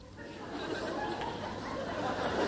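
A theatre audience laughing and murmuring, swelling from quiet into a loud, building crowd reaction.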